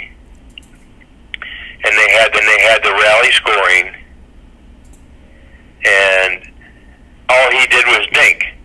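Speech only: a person talking in short phrases with pauses between them. The voice sounds thin and narrow, as over a telephone line.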